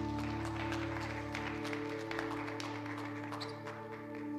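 Congregation clapping over a sustained chord held by the worship band at the end of a song; the lowest bass note drops out about one and a half seconds in.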